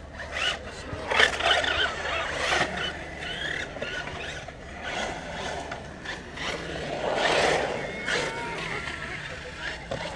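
Brushless 6S RC car (Arrma Talion) driving around a concrete skate bowl. Its motor whine rises and falls with the throttle, with surges about a second in and again around seven seconds.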